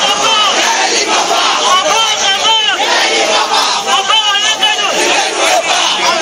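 Large crowd of protesters shouting and yelling together, loud and continuous, many voices at once. Single voices cry out above the mass about two and a half seconds in and again around four seconds.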